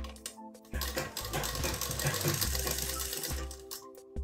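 Domestic sewing machine running in one burst of about two and a half seconds, starting about a second in, stitching a fabric pocket corner with a fast needle chatter.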